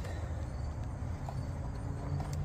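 Low, steady background rumble with no distinct events.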